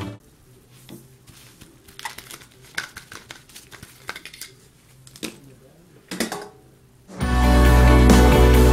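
Glass bottles clinking and knocking lightly against each other and the stainless steel bowl as they are handled in soapy water, a scatter of separate clicks. Background music comes back in loudly about seven seconds in.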